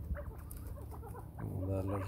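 A few short, faint clucking calls from a young first-cross chukar partridge.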